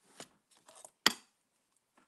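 Paper card and scissors handled on a tabletop: soft paper rustles and small ticks, with one short sharp click about a second in.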